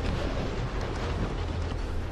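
Wind buffeting the microphone: a steady rushing noise with a deep rumble underneath.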